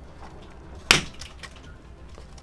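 A single sharp click about a second in: the replacement charger-port board of a UE Megaboom speaker being pressed down and snapping into its connection on the main board.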